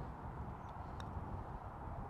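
A single short click of a Stix putter's face striking a golf ball about a second in, with a faint ring, over a steady low background rumble.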